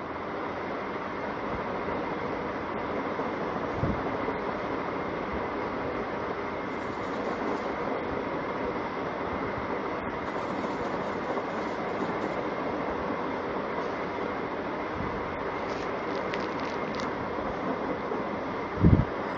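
Steady, even background noise with no speech: a constant rushing room noise, like the air-conditioning hum heard under the narration either side.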